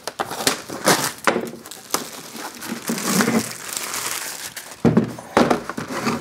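Clear plastic shrink-wrap crinkling and crackling as it is slit with a utility knife and peeled off a boxed wrench set, in irregular bursts. A couple of louder knocks come near the end.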